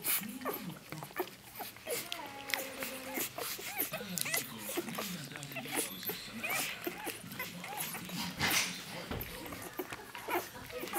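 Newborn Rhodesian Ridgeback puppies squeaking and whimpering in many short, overlapping cries that bend up and down in pitch while they nurse, with wet suckling clicks throughout.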